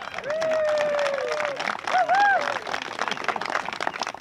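Small audience clapping, with a voice heard over the applause in the first half.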